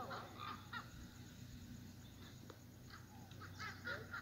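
Faint, scattered bird calls: a few short, wavering chirps in the first second and again near the end.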